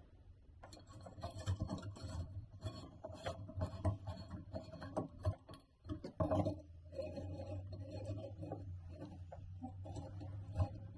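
Handling noise as a filament light bulb comes out of its cardboard box and bulbs are screwed into the sockets of a brass wall sconce: irregular small rubs, scrapes and clicks of paper, glass and metal.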